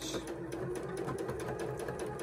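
Domestic sewing machine stitching steadily with rapid, even needle strokes, starting a quarter-inch seam with a back stitch to lock its start.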